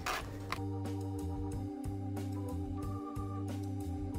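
Background music of sustained organ-like keyboard chords held steadily, with light regular ticks over them.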